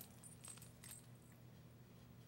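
Near silence with a few faint, light metallic clinks in the first second, from small charms and bells hanging on a handmade journal as it is handled.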